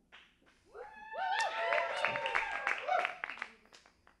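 Audience cheering and clapping: many voices call out at once with scattered claps. It builds up about a second in and fades away near the end.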